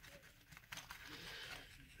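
Near silence with a faint, brief rustle of a paper towel being pressed against a small plastic model to blot off wet watercolour.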